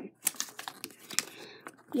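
Light handling noise from a paper checklist and a small cardboard toy box: a handful of short, sharp ticks and taps spread through the two seconds.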